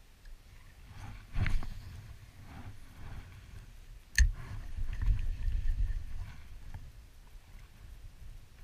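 Low rumbling wind and river-water noise with handling sounds from fishing gear: a brief knock about a second and a half in, then a sharp click about four seconds in, followed by a couple of seconds of louder rumble.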